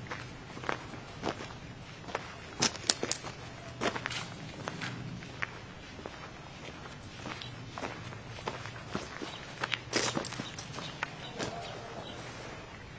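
Footsteps walking on a grassy dirt path, with a few sharp cracks among them: a quick cluster of three about two and a half seconds in and another near ten seconds in.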